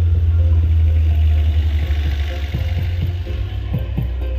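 Deep, very loud bass music from a truck-mounted 'horeg' sound system played at full volume, the low end swamping everything else. The bass eases slightly about three seconds in as lighter beats come through above it.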